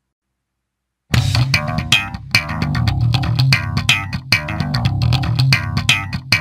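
Silence between album tracks, then about a second in a hardcore/nu metal song starts abruptly and loud, led by bass guitar and guitars with sharp percussive hits at a steady beat.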